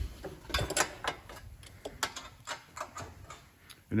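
Hand ratchet clicking in quick, uneven runs as bolts are tightened by hand: a string of light, sharp ticks from the ratchet's pawl.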